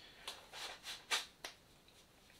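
Five soft, brief rustles of a hand rubbing a sweatshirt sleeve, working feeling back into a numb arm.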